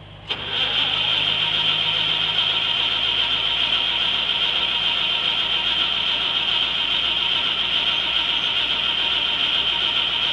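Starter cranking the 1949 Corbitt T-22's gasoline engine, which does not catch. A click about a third of a second in as the starter engages, then steady, loud cranking.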